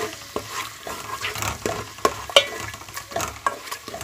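Ginger-garlic paste sizzling lightly in hot oil in a metal pot, with a spatula stirring and scraping against the pot bottom in irregular strokes.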